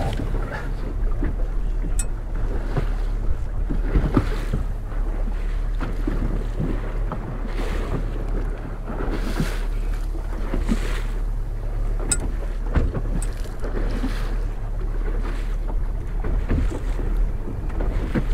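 Outboard motor running steadily at slow trolling speed, a low even hum, with wind buffeting the microphone and choppy water washing past the hull.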